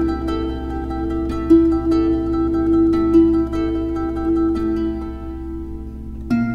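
Instrumental harp music: a run of plucked harp notes ringing over a steady low drone, thinning out near the end.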